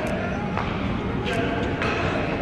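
Badminton rally: sharp strikes of rackets on the shuttlecock, one a little over half a second in and two more in quick succession near the end, over people's voices and a steady low rumble of the hall.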